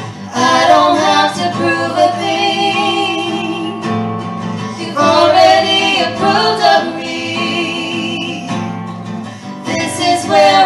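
Two women singing with an acoustic guitar, in phrases that start anew about every five seconds.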